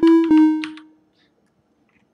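Two electronic keyboard notes from a web-based chromatic-scale player, struck on the computer's letter keys. The first is the E. Both ring briefly and die away within about a second.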